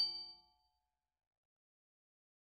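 The last notes of a bright, glockenspiel-like chime ring out and die away within the first half second, then complete silence.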